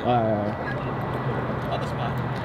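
A brief spoken word, then a steady low hum of car engines idling in the street.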